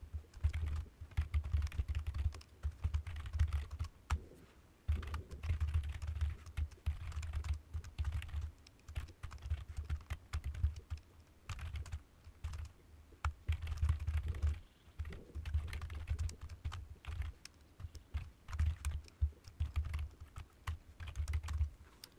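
Typing on a computer keyboard: fast runs of clicking keystrokes with a dull low thud under them, broken by short pauses about four and twelve seconds in.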